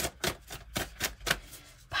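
A deck of oracle cards being shuffled by hand: a quick run of sharp card slaps, roughly four a second.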